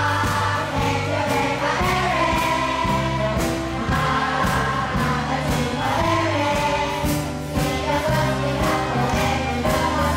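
Children's choir singing together over instrumental accompaniment, with steady bass notes and a regular beat.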